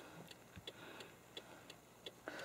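Near silence, with a faint, even ticking about three times a second.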